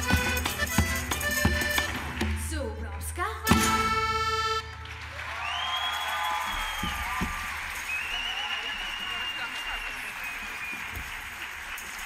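A tuna string ensemble of mandolins and guitars with accordion and double bass plays a lively folk instrumental. It ends on a held final chord about four and a half seconds in. Audience applause with cheering follows.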